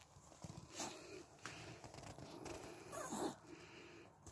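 A dog making faint short whines near a hedgehog, one of them rising in pitch about three seconds in.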